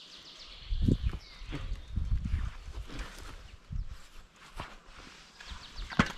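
Bicycle being moved over dry grass: the front wheel and footsteps crunch and rustle through dry stalks, with irregular dull thumps as the bike and camera are jostled.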